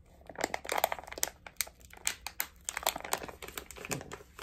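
Crinkly plastic toy packaging crackling in a fast, irregular run as it is bitten and tugged at to tear it open without scissors; the packet holds and does not tear open.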